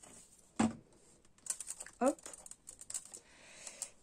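Small handling noises of a plastic glue bottle and craft pieces on a cutting mat: a run of light clicks and taps through the second half, as the bottle is set down.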